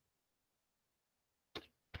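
Near silence, broken near the end by a faint short sound and then the start of a man's speech.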